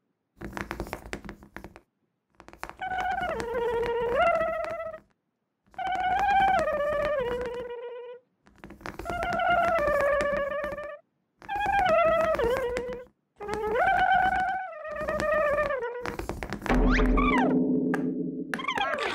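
Cartoon soundtrack: a few light knocks, then a short wordless melodic phrase that steps down in pitch, repeated about five times, with a louder falling-pitch sound effect near the end.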